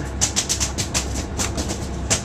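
Boat engine running with a steady low drone, with irregular sharp clicks and knocks over it.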